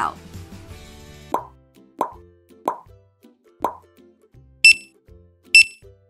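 Four short plops about a second apart, then two sharp, high electronic beeps of a checkout scanner ringing up items, over soft background music.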